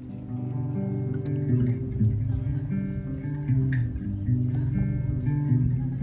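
Acoustic guitar playing a slow melody of plucked notes that ring on and overlap.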